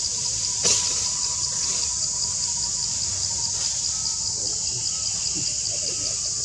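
Steady, high-pitched insect chorus with a fast, even pulsing. A single sharp click sounds less than a second in.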